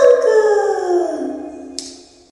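A voice singing a Konkani lullaby, ending a line on one long held note that slides down in pitch and fades away, with a brief click near the end.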